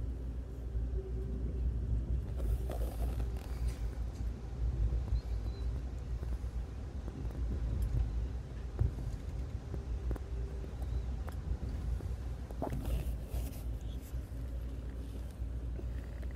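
Steady low rumble of a passenger train car in motion, heard from inside the coach, with a few faint knocks about three seconds in.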